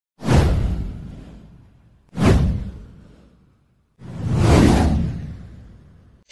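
Three whoosh sound effects for an animated title card, with a low rumble under each. The first two hit suddenly about two seconds apart and fade away; the third swells up and then fades.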